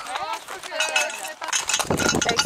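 Light metallic clinking of horse tack as the horses walk under saddle, with faint voices underneath. A low rumble on the microphone comes in near the end.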